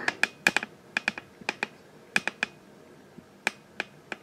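Over a dozen light, sharp clicks and taps in irregular pairs and small clusters, with a pause a little past halfway, from hands or the camera handling near the circuit board and its wiring.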